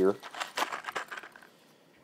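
Plastic blister packaging crinkling and clicking as a pack of crimp-on spade terminals is picked up and handled, a scatter of small irregular rustles lasting about a second and a half before stopping.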